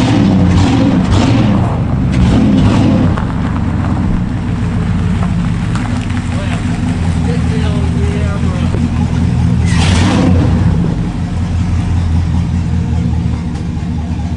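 A GMC pickup's 6.0 V8 runs loudly through an exhaust with the tailpipe cut off, revving up in the first couple of seconds and then holding steady as the truck rolls slowly. This is a test roll after a fire-damaged brake caliper and rotor were replaced, checking that the brake no longer drags. There is a short hiss about ten seconds in.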